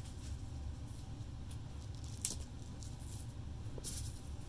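A few soft clicks and rustles from small plastic bead containers being handled, over a low steady background rumble; the sharpest click comes a little past the middle.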